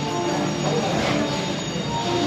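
Background music with held, steady notes at an even loudness.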